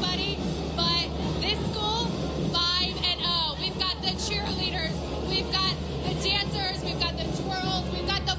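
A cheer squad's high-pitched yells and whoops, over music.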